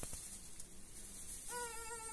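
Newborn baby starting to cry about one and a half seconds in: a thin, steady, high-pitched wail held on one note.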